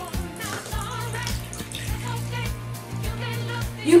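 Water poured from a cup into a bathroom sink, splashing into the basin, over background music with a steady beat.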